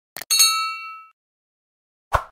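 A faint click, then a bright bell-like ding that rings out and fades within about a second: a notification-bell sound effect.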